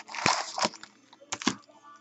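Foil trading-card pack wrappers crinkling as they are handled, with a crinkling burst near the start and a couple of sharp taps later on.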